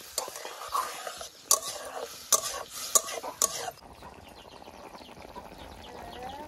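Metal spatula stirring and scraping leafy greens in a metal kadai, with several sharp clinks against the pan. About four seconds in the stirring stops, leaving the greens bubbling softly as they simmer.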